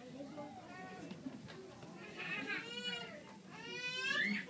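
Young children's high-pitched voices in a hall: faint chatter, then in the second half a couple of longer, bending calls, the last one rising.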